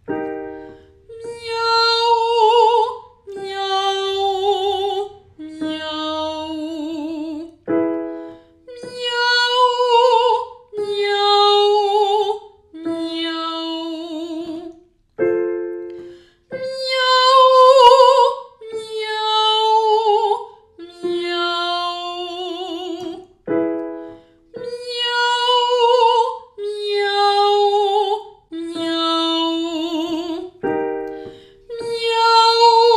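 A woman singing a 'miaou' open-voice vocal warm-up exercise to a digital piano. A short piano cue is followed by three long sung notes stepping down in pitch, with vibrato, and the pattern comes round four times.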